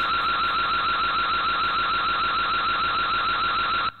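Electronic alarm siren with a steady, rapid warble, heard through a security camera's narrow-band microphone, cutting off suddenly just before the end.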